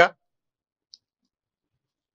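A man's spoken word ends at the very start, followed by near silence: room tone with a single faint, brief click about a second in.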